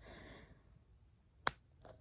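A single sharp plastic click about one and a half seconds in, from the cap of a lotion bottle being handled, after a faint sniff at the start as the bottle is held to the nose.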